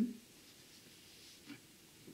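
Near silence: quiet room tone in a pause between spoken sentences, with one faint short tap about one and a half seconds in.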